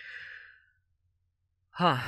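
A man's short, audible sigh-like breath close to the microphone, lasting about half a second, followed by silence; he starts speaking again near the end.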